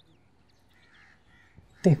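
Crows cawing faintly in the background, a few caws about a second in.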